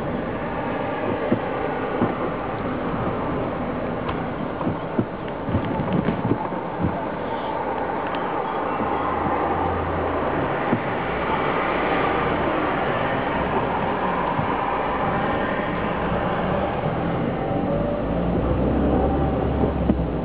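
City street ambience: a steady wash of traffic noise, with scattered small clicks and knocks in the first half.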